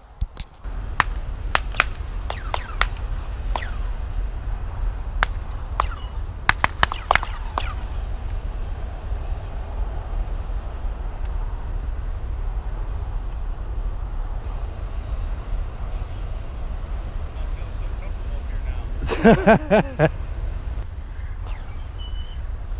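Wind buffeting the microphone with a low, steady rumble, over a faint, even pulsing chirp of crickets. A run of sharp clicks comes in the first several seconds.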